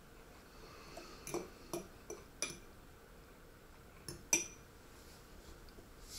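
A metal spoon clinking against a ceramic plate while eating, about seven light clinks: a run of five in the first half and two more just after four seconds in, the last the loudest.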